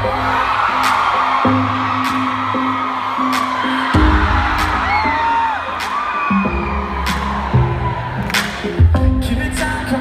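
A live pop band playing a slow instrumental stretch of the song, with bass notes changing every second or two and a drum hit about once a second, heard through an audience's cheering. Several whoops and whistles rise over the crowd noise about five seconds in.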